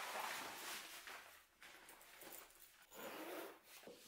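Faint rustling of clothing in soft swells as a shirt and light jacket are pulled on, with a zipper being done up.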